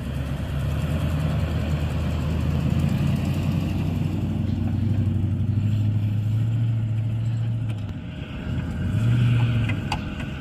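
2003 Toyota Land Cruiser's 4.7-litre V8 pulling through loose sand. Its note climbs slowly for several seconds, eases off about eight seconds in, then revs up again briefly near the end.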